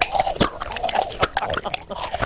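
Loud open-mouthed chewing: wet smacks and clicks of a mouth eating, coming quickly and irregularly.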